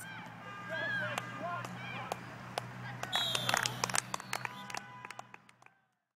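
Faint, distant shouting and voices of players on a sports field, with a steady low hum and scattered clicks underneath; the sound cuts to silence near the end.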